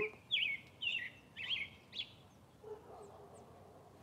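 American robin singing: four short whistled notes, about half a second apart, in the first two seconds, then quiet.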